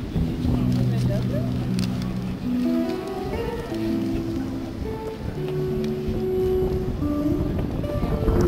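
Busker singing and playing an amplified acoustic guitar: a melody of held notes stepping up and down over the strummed guitar.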